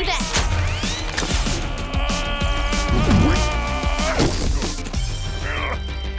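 Cartoon action sound effects over background music: sweeping glides near the start, then a steady insect-like buzz for about two seconds, with sharp hits scattered through.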